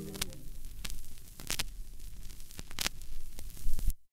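The last note of the song dies away, leaving a spinning 45 rpm vinyl single's surface noise: crackle and hum with a sharp click about every 1.3 seconds, once per turn of the record. A few louder pops come near the end.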